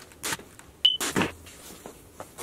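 Bostitch pneumatic nailer firing nails into cedar: short sharp cracks with bursts of air, the loudest about a second in.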